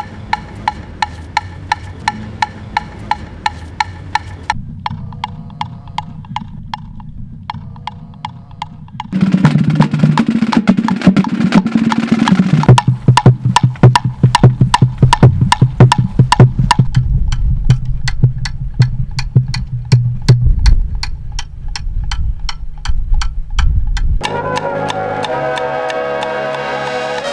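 Cowbell struck in a steady beat, about two hits a second, over a bass line. About nine seconds in, a full rock band comes in much louder with the cowbell still going. Near the end, brass horns enter.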